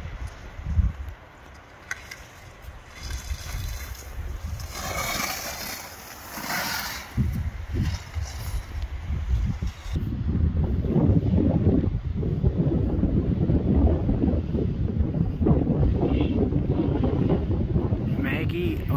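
Wind buffeting the microphone on an open ski slope: a heavy, steady low rumble from about halfway on. Before that, quieter, with two short hissing swooshes of skis scraping on snow as a slalom skier passes the gates.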